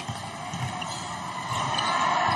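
Basketball arena crowd noise during live play: a steady crowd hubbub that grows a little louder near the end.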